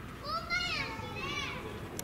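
A young child's high-pitched voice calling out twice, each call rising and then falling in pitch, over a low background murmur of other people.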